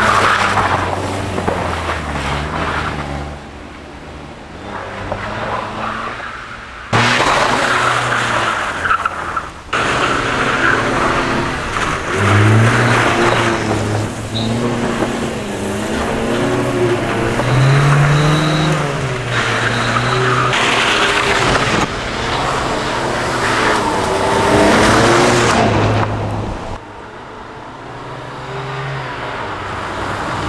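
A Fiat 125p's four-cylinder engine revving hard, its pitch rising and falling, as the car drifts sideways on a loose dirt road, with the tyres skidding and scrabbling through the gravel. It comes in several separate passes, the loudness jumping suddenly between them.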